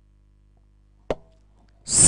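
Near silence after the music stops, broken by one short, sharp click about a second in.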